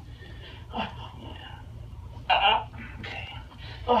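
Two short human vocal sounds that are not words, a faint one about a second in and a stronger one a little past two seconds, over a steady low hum.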